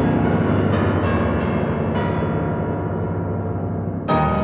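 Solo grand piano playing a massive low chord held with the sustain pedal, with a few softer restrikes in the first couple of seconds. The sound then dies away slowly as its bright upper overtones fade.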